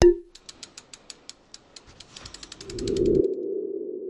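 Logo sting sound effect: a sharp hit, then a run of quick clicks that speed up while a low tone swells. The tone is loudest near the end and rings on.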